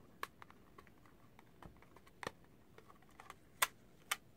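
Scattered light clicks and taps of hands handling a plastic doll styling head and its base, with a sharper click a little past three and a half seconds in.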